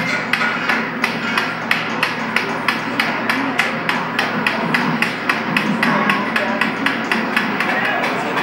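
Rapid, even clicking, about four sharp clicks a second, over a continuous background murmur of voices.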